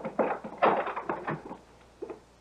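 Radio-drama sound effects: a short run of knocks and bumps in the first second or so, dying away to near silence near the end.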